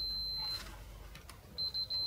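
Digital multimeter's continuity beeper sounding a steady high beep as its probes touch the contacts of the charger's two cell slots, showing the slots are wired directly in parallel. A half-second beep at the start, then a few short chirps and a longer beep from about a second and a half in.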